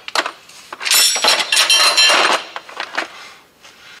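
Metal clinking and rattling from a hand tube bender as its handle is released and the bent metal tubing is worked free of the bending die, with a few light clicks before it and a louder rattle with some ringing for about a second and a half, starting about a second in.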